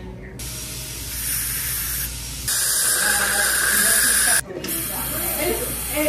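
Dental air syringe blowing air over the teeth in three long hissing blasts that start and stop sharply, the middle one loudest.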